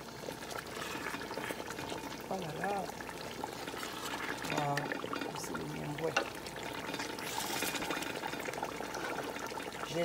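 Palm nut sauce simmering over low heat in a metal pot, a steady bubbling hiss from the oily sauce now that its foam has gone and the fat has risen. A wooden spoon moves through it, with a sharp knock a little past the middle.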